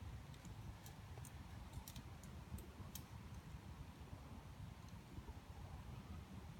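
A quiet lull: a steady low rumble with a scatter of faint, sharp high clicks in the first three seconds or so.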